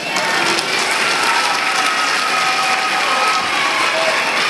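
Audience applauding steadily in a hall, with one long held cheer through the middle.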